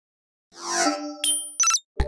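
Logo-animation sound effects: after a brief silence, a swell of ringing tones, then a single ding and a quick cluster of high chimes near the end.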